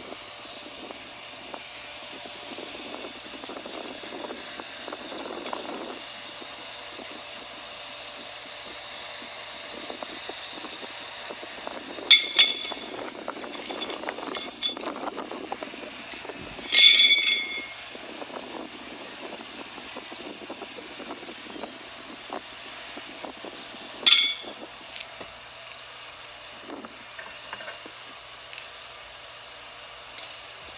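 Three sharp metallic clanks with a brief ring, spread several seconds apart: steel pitching horseshoes striking the steel stake and pit. The second clank is the loudest and rings longest.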